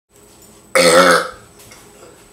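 A man's loud burp, about half a second long, roughly a second in.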